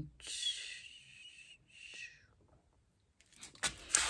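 Two soft breathy hisses of a person's breath close to the microphone, the first right after the speech stops and the second about two seconds in. Dead silence follows, then a few faint clicks near the end.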